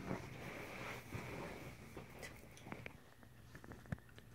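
Faint plastic handling noise as a water bottle's neck is pushed into the Emson R2-D2 humidifier head's plastic collar, with a few soft ticks and a sharper click near the end.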